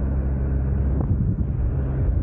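Steady low rumble of road traffic alongside, mixed with wind on the microphone.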